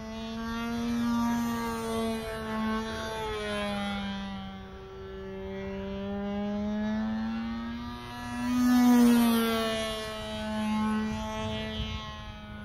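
Nitro glow engine of a radio-controlled model airplane running at high revs in flight, a steady high buzz whose pitch drifts slowly up and down as the plane flies around. It is loudest about nine seconds in.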